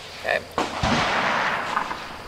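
A single gunshot, sudden, followed by a long echo rolling away for about a second and a half.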